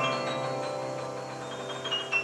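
Live jazz piano: bright high notes ringing out and slowly fading with the sustain held, the music growing quieter.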